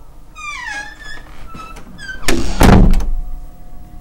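A door creaking in squeaks that fall in pitch, then a loud slam about two and a half seconds in.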